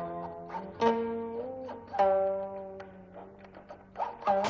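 Background music: a plucked string instrument playing slow single notes that ring and fade, one note bending upward in pitch between one and two seconds in.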